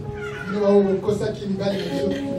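A person's voice, drawn out and wavering in pitch rather than spoken in short words.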